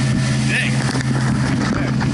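Small open motorboat's engine running steadily at speed: a constant low hum, with water and wind noise from the hull moving fast through the sea.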